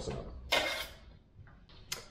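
A metal bench scraper knocks diced onion off into a plastic mixing bowl: one short scrape about half a second in, and a sharp click near the end.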